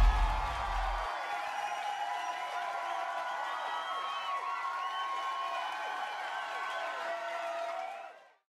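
Large crowd cheering and chattering, many voices overlapping in a steady din, with a deep bass note from a music hit stopping about a second in.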